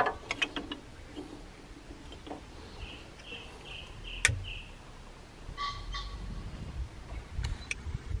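Small sticks of kindling knocking and clattering as they are laid into a clay chiminea: a cluster of sharp knocks at the start and one more about four seconds in. Birds chirp in the background, with a quick run of about five chirps near the middle, and a few faint clicks near the end as a long lighter is struck to light the kindling.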